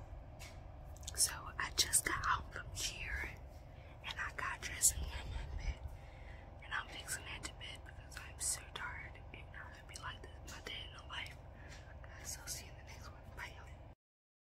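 A young woman whispering in short phrases close to the microphone, over a steady low hum.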